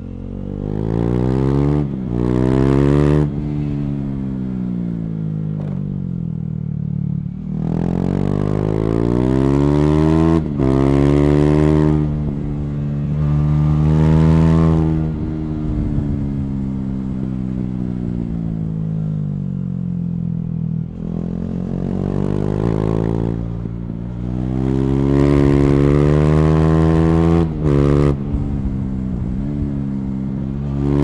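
KTM Duke 390's single-cylinder engine, fitted with an Akrapovič slip-on exhaust and the catalytic converter removed, heard from the bike while riding. It is pulled hard through the revs several times, with short breaks at the gear changes, and its pitch falls away between pulls as the bike slows.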